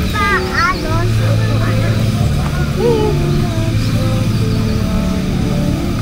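Background music with sustained low notes that change every second or two, with a child's high voice sweeping up and down briefly near the start.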